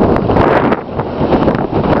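Loud wind buffeting the microphone as the open carriage moves along, with street traffic noise underneath.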